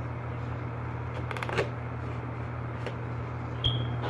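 A knife cuts the tape on a cardboard action-figure box as the box is handled. There is a quick run of sharp clicks about a second and a half in, another click near three seconds, and a louder knock with a brief ring near the end, all over a steady low hum.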